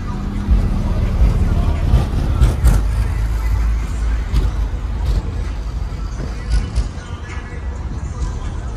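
A car driving across a parking lot with a heavy low rumble, mixed with loud bass-heavy music and voices.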